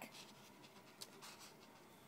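Near silence with a few faint, short scratchy rustles of a foil trading-card pack being handled.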